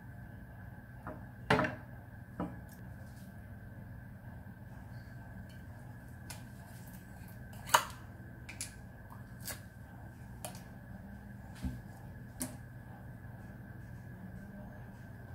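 Scattered light clicks and knocks of things being handled on a tabletop, two of them louder, about a second and a half in and near eight seconds. Under them runs a faint steady hum with a thin high whine.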